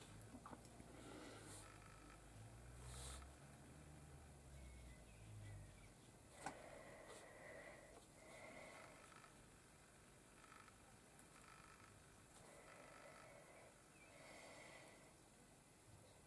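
Near silence: room tone, with a faint low hum for the first few seconds and soft breaths recurring every second or two.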